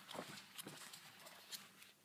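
Faint handling of Pokémon trading cards: a few soft taps and rustles as a stack of cards is taken out of a theme deck box.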